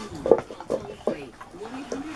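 A puppy licking out a plastic slow-feeder bowl on a tiled floor: irregular wet licks, with the bowl knocking now and then.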